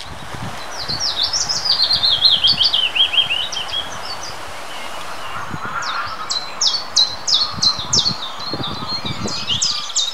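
A willow warbler sings one sweet phrase that cascades down in pitch and ends about four seconds in. About six seconds in, a common chiffchaff starts its song of evenly repeated chiff-chaff notes, about two a second. Wind buffets the microphone underneath.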